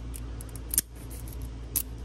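Two sharp metallic clicks from a key turning in and pulling out of a Schlage F series compressible lock cylinder, about a second apart.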